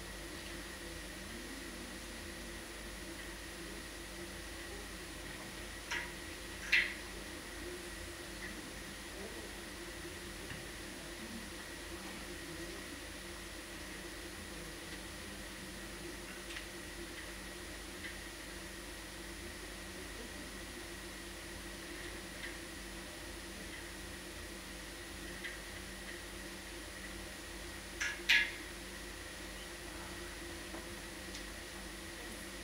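Quiet room tone with a faint steady hum, broken twice by short pairs of high squeaks from a marker writing on a whiteboard.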